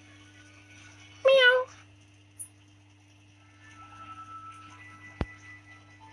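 A young kitten meowing once, a short wavering mew about a second in. A single sharp click comes near the end.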